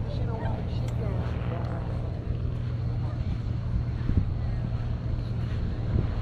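Beach ambience: a low steady rumble, with people's voices talking in the first second or so.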